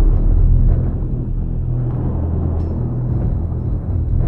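Intro sting music: a deep, steady low rumble with held low tones under a dark cinematic score, slowly dying away.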